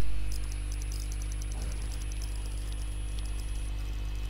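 Steady low electrical hum with faint overtones and a faint high ticking: the background noise of the recording between spoken sentences. A knock just before it fades out in the first half-second.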